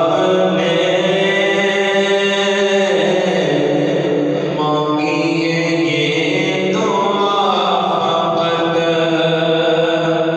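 A man's solo voice sings a naat, an Urdu devotional poem, into a microphone. He holds long, gliding notes in a chant-like melody, starting new phrases about three, five and seven seconds in.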